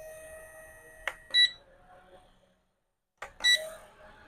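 Battery-operated portable camping fan's control panel beeping twice, about a second and a half in and near the end, as its button steps the fan up through its speed settings to level four, the highest. A faint steady motor hum sounds in the first second and fades out.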